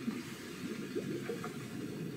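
Sound effect of a music video's animated logo intro: a dense, crackling, rushing noise, low in pitch, that starts suddenly and runs on steadily.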